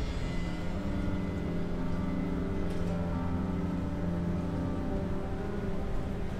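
Soundtrack music: slow, sustained chords held for a second or more each, over a steady low rumble.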